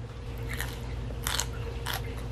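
A person chewing a crunchy mouthful of fried chicken from a poke bowl, with a few short crisp crunches about half a second, a second and a half and two seconds in, over a steady low hum.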